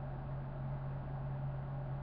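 A steady low hum with a faint even hiss: background noise of the recording, with no distinct event.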